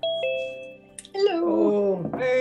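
A two-note electronic chime falling in pitch, a video call's alert as a participant joins. A voice starts about a second in.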